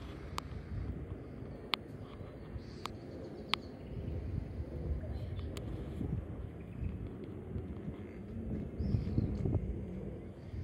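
Outdoor ambience: a steady low rumble, with a handful of short, sharp ticks in the first six seconds.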